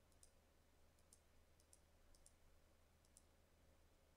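Near silence with about five faint computer mouse clicks, several in quick pairs, over a steady low hum.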